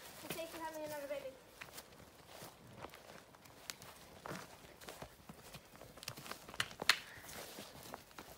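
Quiet, irregular footsteps of a cow and a person walking from grass onto a tarmac lane, with a few sharp clicks scattered through.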